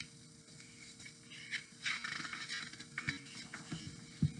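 Faint rustling and soft knocks of a picture book's paper pages being handled and turned, over a faint steady hum.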